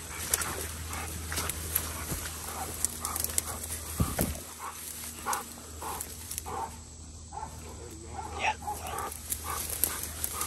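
Hunting dogs barking repeatedly in short bursts, with grass and brush crackling as people push through it, and one low thump about four seconds in.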